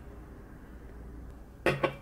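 Low steady room hum while juice is sipped from a can. Near the end comes a short, sharp click with a brief voiced hum.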